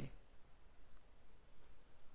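Near silence: faint steady hiss and low hum of the recording (room tone) in a pause between narration.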